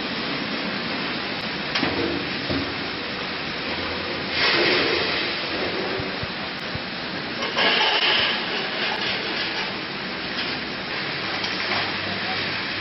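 Steady hissing from a frying machine line at work, with two louder rushing surges about four and seven and a half seconds in.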